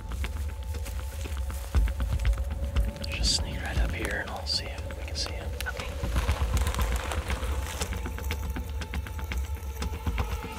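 Background music with a deep, pulsing bass and a held tone, with soft whispered voices around the middle.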